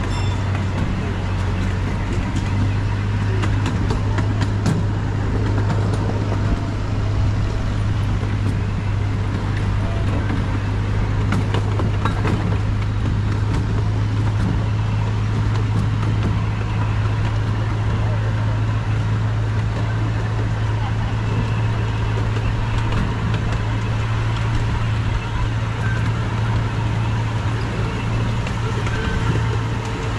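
Miniature amusement-park train running steadily along its track: a low, even engine drone under the rumble of the wheels on the rails, with a few sharp clicks.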